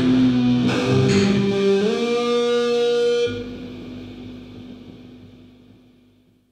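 Grunge rock song ending on electric guitar: a sustained note bends upward about two seconds in. About a second later the band stops and a last chord rings out, fading away near the end.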